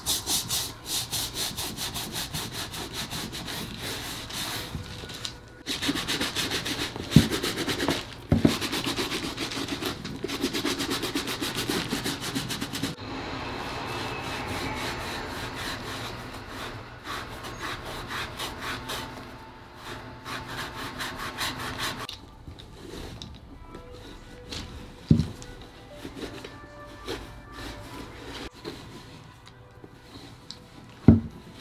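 Stiff shoe-cleaning brush scrubbing a foamy leather sneaker in rapid back-and-forth strokes, with a few sharp knocks. The rubbing grows softer and quieter over the last third.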